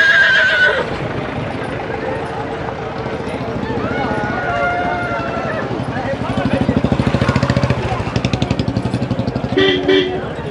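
A horse whinnies in the first half-second, a quavering high call, with people's voices around it. From about six seconds in comes a rapid, even pulsing sound.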